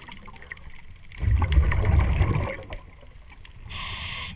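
Scuba breathing heard underwater: a low rumble of exhaled bubbles for over a second, then a brief hiss of the regulator on the inhale near the end.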